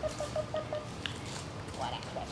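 A woman's quick run of about five short, high calls coaxing a puppy to follow her, opening with a sharp click.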